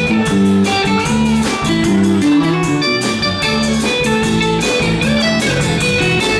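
Live rock band playing an instrumental passage: electric guitar, electric bass and drum kit together, with no singing and a steady beat.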